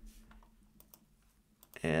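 A few faint, scattered computer keyboard keystrokes as a number is typed in, over a low steady hum.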